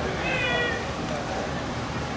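A single short, high-pitched cry, a little over half a second long, rising over steady background noise and chatter from the ballpark crowd.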